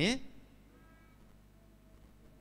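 A man's voice through a microphone ends a word, then a pause of near silence with a faint, brief high-pitched call about a second in.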